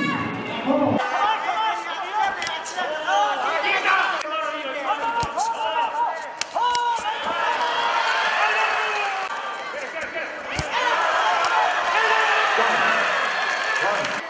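Several voices shouting over one another at ringside during a kickboxing bout, broken by a few sharp smacks of strikes landing.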